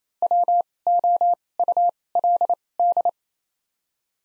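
Morse code sidetone, a single steady beep keyed in dits and dahs at 28 wpm with widened gaps between letters (Farnsworth spacing), sending the word "would" (W-O-U-L-D) as five letter groups.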